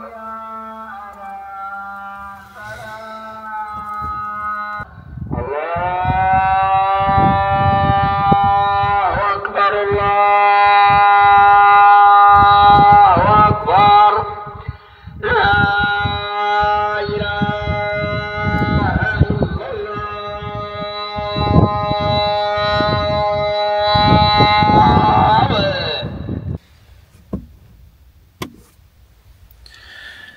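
Islamic call to prayer (adhan) chanted by a muezzin over a loudspeaker. It comes in several long phrases of held, wavering notes, each ending in a slide in pitch with a short pause between them, and stops a few seconds before the end.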